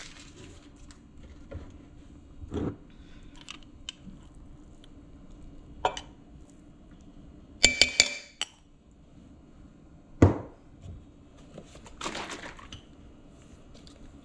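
A metal spoon clinking against a stainless steel mixing bowl, a quick run of four or five ringing taps about eight seconds in, as minced garlic is knocked off the spoon. Other small kitchen clicks come before it, and a single louder knock follows about two seconds later.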